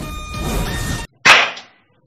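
Film-soundtrack noise with faint steady tones cuts off about a second in. It is followed by one sharp, loud hand clap that rings out briefly, the first of slow, evenly spaced claps.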